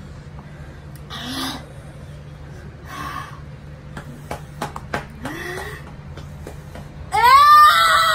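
A few short breathy sounds and small sharp clicks over a low hum. About seven seconds in, a woman lets out a loud, long wailing cry that rises in pitch, a pained reaction to her mouth burning from very spicy noodles.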